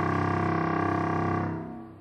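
Contrabassoon holding one very low note, a low C that vibrates only about 33 times per second. It sounds steady, then fades away near the end.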